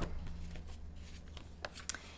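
Soft rustling and handling of paper planner pages at a desk, with a couple of light clicks near the end, over a steady low hum.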